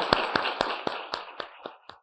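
Audience applause, thinning to a few separate claps and dying away near the end.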